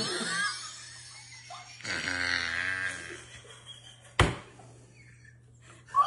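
A person's strained, wavering voice sound lasting about a second, starting about two seconds in, like laughter being held in. A single sharp knock follows a little after four seconds.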